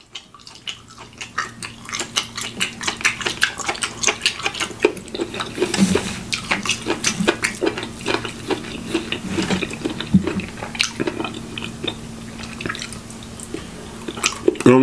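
Close-miked chewing of a mouthful of asparagus and steak: wet, smacking mouth sounds and clicks, several a second, over a faint steady hum.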